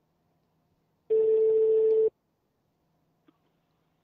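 A telephone line tone: one steady beep about a second long, starting a little over a second in, as a call is connected to bring another party onto the line. A faint low line hum lies under it.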